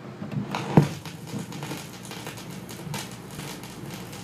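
Surface crackle and scattered pops from a 7-inch vinyl single playing its lead-in groove over a steady hiss before the music starts, with one louder click and thump about a second in.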